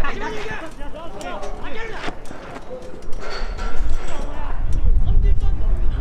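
Football players shouting and calling to each other during an attack, several voices overlapping, with a few sharp knocks. A low rumble rises about four and a half seconds in and becomes the loudest sound.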